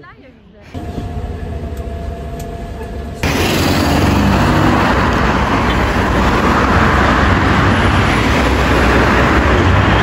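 Road traffic noise: a steady hum of vehicle and road noise, then, after an abrupt cut about three seconds in, the louder, dense noise of heavy traffic on a busy multi-lane city road.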